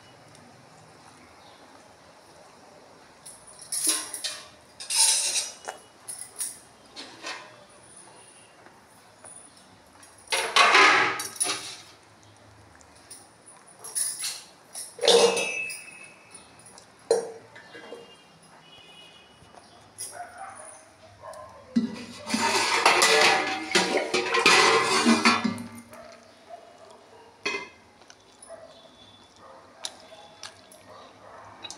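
Stainless steel kitchen vessels and plates clinking and clattering as they are handled and set down, in irregular bursts with some brief metallic ringing. A longer run of clattering comes about three quarters of the way through.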